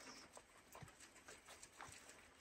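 Near silence, with a few faint soft ticks and rustles of guinea pigs moving about on hay and bedding in their playpen.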